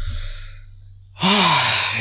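A man breathes in softly, then lets out a long, loud, breathy sigh, voiced and falling in pitch, a little past the middle.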